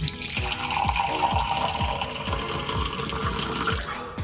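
A stream of beer pours into a glass mug, filling it, and stops just before the end. A background music track with a steady beat plays underneath.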